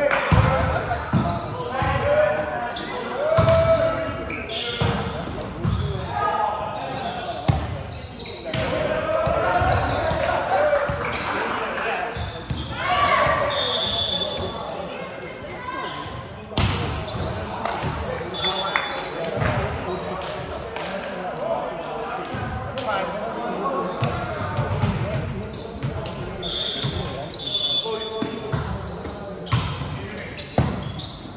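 Indoor volleyball match: players' voices calling out and talking, with repeated short thuds of the ball being hit and bouncing on the court.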